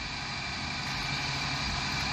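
Box-body Chevrolet Caprice engine running at a steady idle, heard from outside the car.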